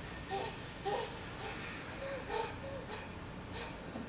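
Faint distant human screams and cries, several short scattered calls over a steady hiss.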